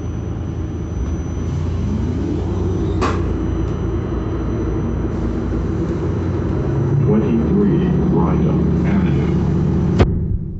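Steady engine drone and road rumble inside a moving articulated transit bus, with the engine note rising about two seconds in and a sharp click about three seconds in.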